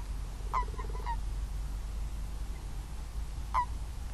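Common toads calling in the water: short croaks, three in quick succession about half a second in and one more near the end, over a steady low rumble.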